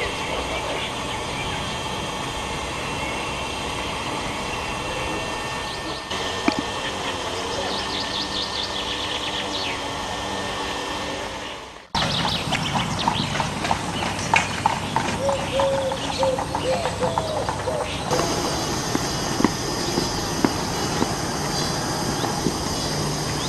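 Steady outdoor background with birds chirping briefly about eight to ten seconds in. After an abrupt cut near the middle, a run of footsteps and sharp clicks from someone walking uphill with a trekking pole.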